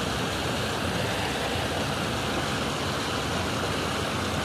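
Steady rush of fast-flowing water pouring through a stone-banked channel.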